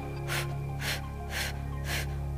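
Three short, sharp exhaled breaths about half a second apart from a person holding a Pilates abdominal crunch, over background music with a steady low drone.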